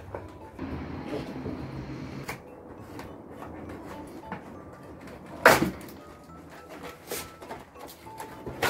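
A cardboard juice-pouch box being cut open with scissors and handled, with rustling and small knocks and one loud sharp sound about five and a half seconds in.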